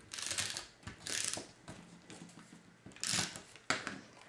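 Stampin' Up! SNAIL adhesive tape runner drawn across paper in three short strokes, the last near the end, laying down double-sided tape.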